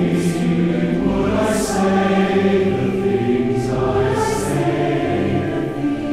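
A large choir singing a slow hymn in full, sustained chords, with soft 's' consonants hissing at the word breaks.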